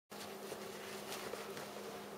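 Faint steady buzzing hum with a few soft rustles.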